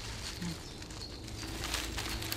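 Bundle of dry birch twigs rustling against tree branches as it is lifted and hung up, with a few light clicks of twig on twig near the end.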